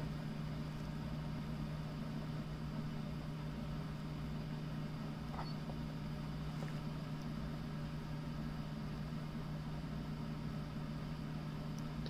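A steady low background hum, unbroken throughout, with no squeaks from the plastic squeaker toy.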